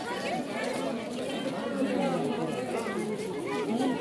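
Several people talking at once: a crowd's overlapping chatter.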